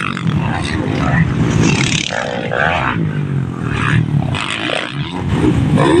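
Motocross dirt bike engines revving up and down on the track, with voices mixed in.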